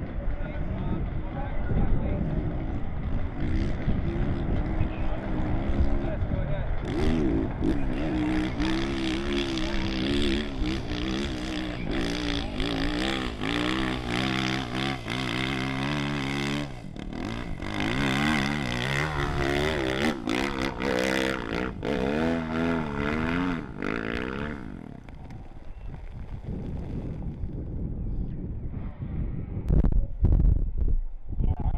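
Dirt bike engine revving hard on a steep hill climb, its pitch rising and falling again and again with the throttle. The engine note drops away about 25 seconds in.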